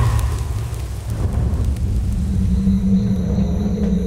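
A deep rumbling drone of horror-trailer sound design. About two and a half seconds in, a steady held tone joins it.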